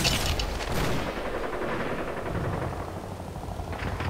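A rapid burst of gunfire in the first second, the shots trailing off into a low rumble that slowly fades.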